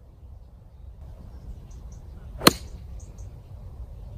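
Golf iron striking a ball off grass: one sharp, crisp click about two and a half seconds in, over a steady low rumble.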